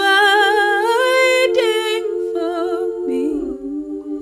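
A cappella female vocals, layered voices holding a sustained chord while a lead voice hums a wordless melodic line with vibrato. The line eases down near the end.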